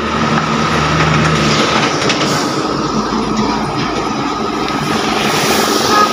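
Road traffic passing close by: a motor vehicle's engine hum for the first second and a half, then steady road noise with a thin, steady high tone over it.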